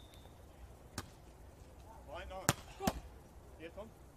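Beach volleyball struck by players' hands and forearms during a rally: a sharp smack about a second in, then two more in quick succession a little past halfway. Brief shouts come between the hits.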